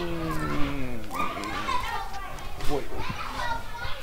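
Speech: a man's voice holds a long, falling, drawn-out cry into the first second, then goes on talking in short bursts.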